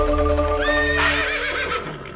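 Live band's final held chord ringing out and fading at the end of a song, with a short high rising note about half a second in.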